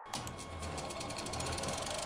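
A rapid, even mechanical rattle of well over ten pulses a second, slowly growing louder: a sound effect in the channel's engine-themed intro sting.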